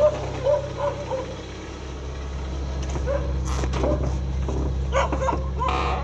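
A dog barking and yipping in short repeated calls, a few in the first second and more in the second half, over a steady low hum. The dog is agitated at being filmed.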